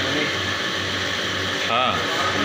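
Food deep-frying in a large wok of hot oil over a gas burner, a steady loud sizzle with a low hum underneath.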